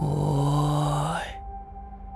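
A man's drawn-out shout of "ōi" over background music, with a rising sweep under it. The shout and the sweep cut off together about halfway through, and the music carries on more quietly.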